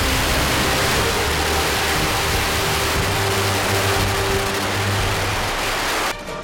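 A long string of firecrackers going off in one dense, continuous crackle that cuts off suddenly at the end, with music faint underneath.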